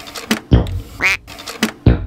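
Experimental electronic synthesizer music: a string of sharp percussive synth hits and, about a second in, a short pitched tone that bends up and back down.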